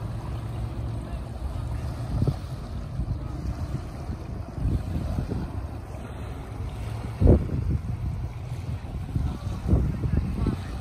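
Wind buffeting the microphone: a steady low rumble with uneven gusts, the strongest about seven seconds in.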